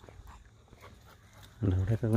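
Quiet outdoor background, then about one and a half seconds in a loud, low-pitched voice starts up and carries on in short segments.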